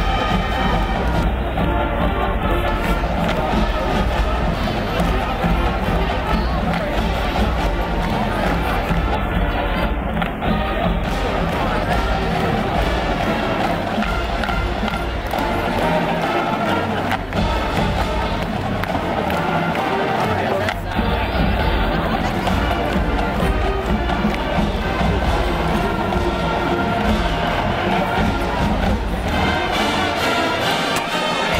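College marching band playing on the field, a full ensemble of horns and drums, with crowd noise from the stands mixed in.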